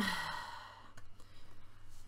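A woman's long breathy sigh, strongest at the start and fading out after about a second, followed by a few faint taps as a tarot card is laid on the cloth-covered table.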